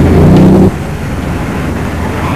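Loud low rumble of a vehicle engine, which drops away abruptly under a second in, leaving a quieter steady hiss.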